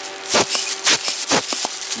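Clear plastic packaging bag crinkling in a few short, irregular bursts as it is handled.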